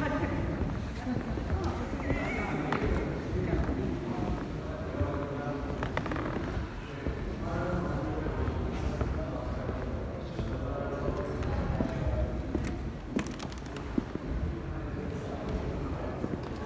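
Faint, indistinct voices of people talking at a distance, with footsteps on a stone floor and a steady low rumble of handling noise.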